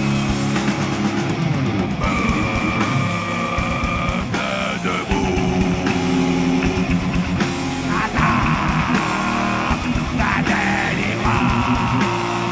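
Live heavy metal band playing: distorted electric guitars and drums, with several voices singing long held notes together.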